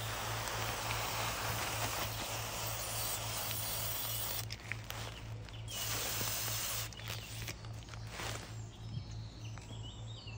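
Aerosol freeze spray hissing in a long steady burst of about seven seconds, then in weaker, shorter bursts, sprayed into a plastic bag to freeze and kill an Asian hornet nest and its hornets.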